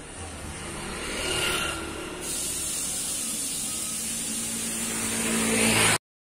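Street traffic with a motor vehicle running close by, getting louder over the last seconds before the sound cuts off abruptly.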